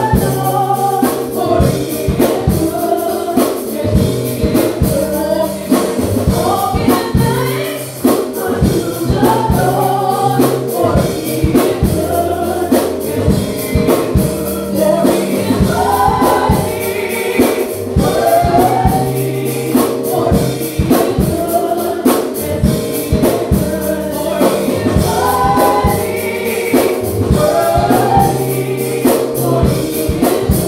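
Live gospel song: a woman singing lead into a handheld microphone, backed by organ and keyboard with a drum kit keeping a busy beat.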